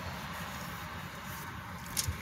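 Quiet, steady background noise inside a parked car's cabin, a low hiss and rumble with no distinct event.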